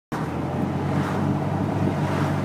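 Car engine running steadily while driving, with road and wind noise, heard from inside the Mini's cabin.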